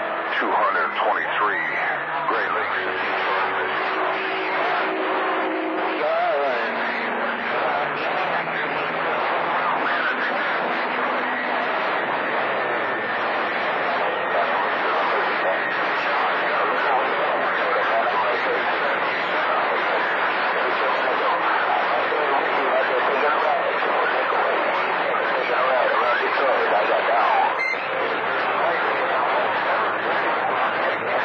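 CB radio receiving long-distance skip on channel 28: unintelligible voices under a constant hiss of static. Steady whistling tones come and go over the static through the first half.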